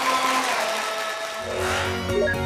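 Whooshing sound-effect transition of a TV station's closing logo ident: a hiss with a falling tone, then a rising sweep and low bass coming in near the end, leading into music.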